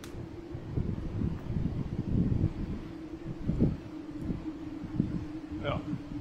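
Wind buffeting the phone's microphone in irregular gusts, a low rumbling noise, with a steady low hum underneath from about a second in.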